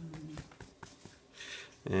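Cloth rag dabbing on a wet notebook page, blotting up water-dissolved ink: a few faint soft taps, then a brief light rustle about one and a half seconds in.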